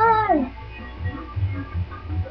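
A girl's singing voice ends a line on a note that slides down in pitch, over a pop backing track. After about half a second the voice stops and only the quieter backing music with its low beat continues.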